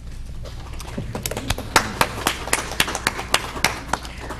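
A small group of people applauding, starting about a second in, with the separate hand claps easy to pick out.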